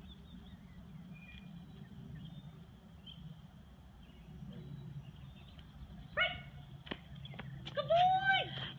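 Doberman puppy whining: a short high whine about six seconds in, then a longer whine that rises and falls near the end. A low steady rumble sits underneath throughout.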